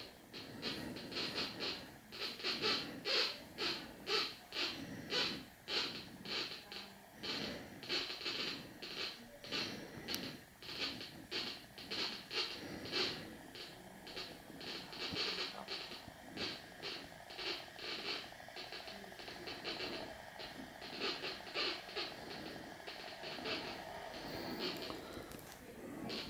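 Homemade Minipulse Plus pulse induction metal detector's audio signal sounding in a steady train of short pulses, about two a second, as a ring is tested at the search coil. The detector appears to be partly set off by the camera held close to the coil.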